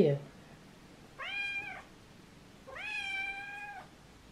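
Black kitten meowing twice: a short meow about a second in, then a longer, drawn-out meow.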